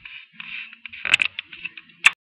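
A hand rubbing and fumbling against the webcam, a scratchy rustle broken by sharp clicks, the loudest about a second in and another at the very end.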